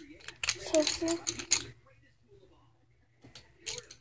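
Wooden colored pencils clicking and rattling against each other as a handful is sorted: a quick run of clicks for about a second, then a few softer clicks near the end.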